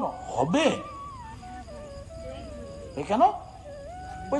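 A man's voice singing a drawn-out, wordless melodic phrase: a quick swoop up and down near the start, then one long note sliding slowly down in pitch, and another short swoop about three seconds in.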